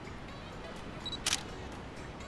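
A single DSLR shutter click a little after halfway through, just after a short high beep.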